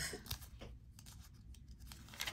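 Faint rustling and light ticks of paper as a planner page is handled and lifted to turn.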